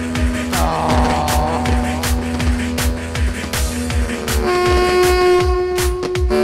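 Live Arab wedding dance music: a steady, even drum beat under a keyboard and a reedy wind-instrument melody, which settles into long held notes from about four and a half seconds in.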